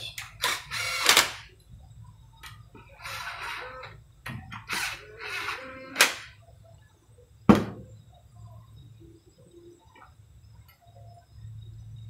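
Cordless drill running in a few short bursts as it drives in the bolts that hold a thread-repair drilling fixture plate to an aluminium engine block. Two sharp knocks follow a little over a second apart, the second one loud.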